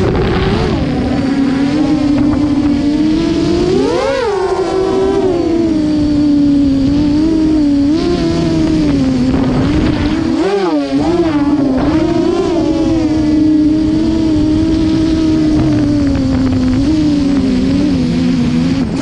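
Brushless motors and propellers of a 7-inch FPV quadcopter whining steadily, the pitch swelling with bursts of throttle about four seconds in and again around ten to eleven seconds. Wind rumbles on the onboard camera's microphone underneath.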